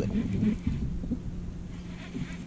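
Low rumble of wind buffeting the microphone, with a few faint knocks in the first half.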